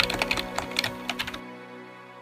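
Computer keyboard typing clicks, a quick irregular run of keystrokes that stops about one and a half seconds in, over background music whose held chord fades away.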